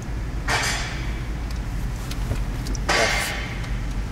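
Low steady hum inside the cabin of an idling 2016 Toyota Land Cruiser, its 5.7-litre V8 running. Two brief rushes of noise come about half a second in and about three seconds in.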